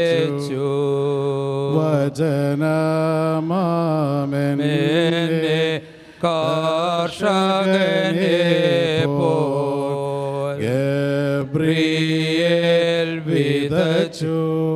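Men's voices chanting a funeral hymn together, sustained and gliding notes at a low pitch, with a brief pause about six seconds in.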